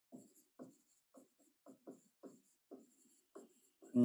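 Stylus strokes on a writing tablet as a word is handwritten: a quiet run of short scratches, about two or three a second.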